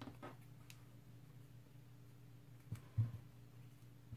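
Quiet room tone with a steady low hum, and two faint light taps close together about three seconds in as foam craft strips are handled and glued by hand.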